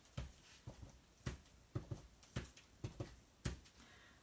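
Small clear-block stamp tapped on an ink pad and pressed onto cardstock over and over: light, uneven taps, about two a second.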